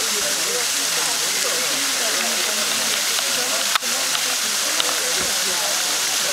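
Indistinct voices of several people talking in the background over a steady hiss. A brief click a little under four seconds in.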